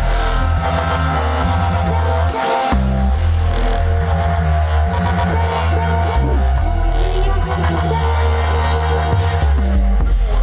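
Loud DJ set of electronic music mixed live on turntables, with a heavy bass line stepping between notes. The bass drops out for a moment about two and a half seconds in, then comes back.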